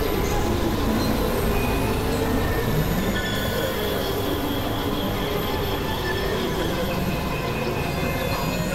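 Experimental synthesizer noise drone: a dense, steady wash of noise from deep bass upward, with several thin high tones held over it and a short upward glide low down about three seconds in.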